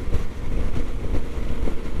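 Yamaha XT1200Z Super Ténéré's parallel-twin engine pulling under throttle at motorway speed, mixed with heavy wind rumble on the camera microphone.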